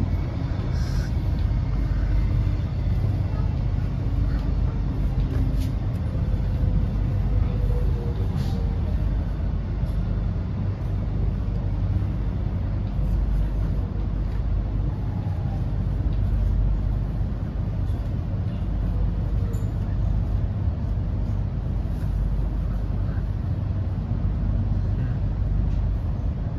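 Cabin noise inside an X'Trapolis electric suburban train: a steady low rumble of wheels and running gear, with a few faint falling tones as the train slows into a station and comes to a stop.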